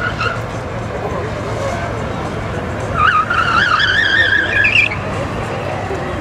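Ford Fiesta ST's tyres squealing as it corners hard through a cone course: a brief chirp at the start, then a wavering squeal of about two seconds from about halfway in, over the steady hum of its engine.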